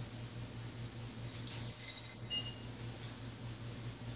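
Quiet room tone with a steady low electrical hum. About two seconds in there is a brief, faint glassy clink with a short ringing tone, the sound of an iced drinking glass being set down on the bar.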